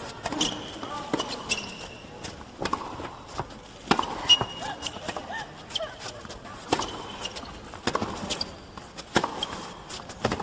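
Tennis rally on a hard court: sharp racket-on-ball strikes and ball bounces about once a second, with short, high rubber shoe squeaks on the court surface between shots.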